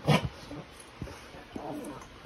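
A small dog gives one short, loud bark right at the start, followed by a few faint sounds.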